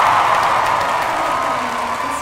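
A large crowd cheering and applauding loudly, slowly dying down.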